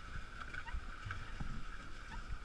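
Water sloshing and splashing around a pedal catamaran moving over choppy sea: a steady hiss with irregular low thumps.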